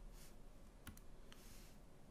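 Near silence with a few faint, separate clicks as expression keys are entered into an on-screen calculator emulator.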